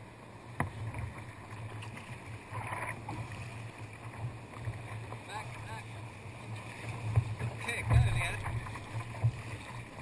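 Sea kayak paddled through choppy sea water: paddle strokes and water splashing against the hull, with surf washing over nearby rocks. There is a louder surge of splashing about eight seconds in.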